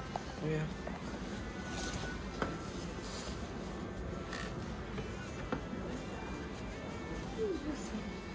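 Wall-mounted hand-sanitizer dispenser being pressed, giving two sharp clicks about two and a half and five and a half seconds in, over quiet room tone with a few brief vocal sounds.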